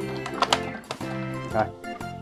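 Background music, with a sharp plastic click about half a second in as the battery cover of a remote-control toy car is pushed shut.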